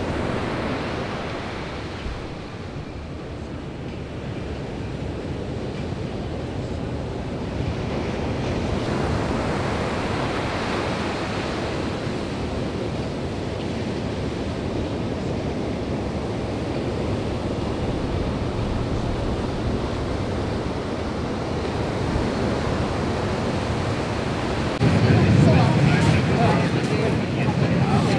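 Ocean surf breaking: a continuous rushing wash of waves and whitewater, with a louder, deeper rush about three seconds before the end.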